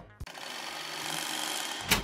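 Edited-in transition sound effect: a noisy rasp that grows slowly louder for about a second and a half, ending in two sharp clicks near the end.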